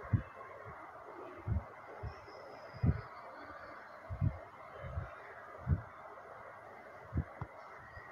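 Bitter gourd slices frying in hot oil in a kadai: a steady sizzle, broken by dull low thumps on the microphone about once a second.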